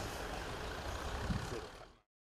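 Steady hum of road traffic on a nearby elevated highway, fading out near the end.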